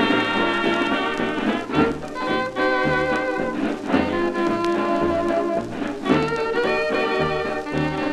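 Early-1930s dance orchestra playing an instrumental passage from a 78 rpm shellac record: brass and reed chords over a stepping bass line. The record's surface noise runs under it, left untouched by noise reduction.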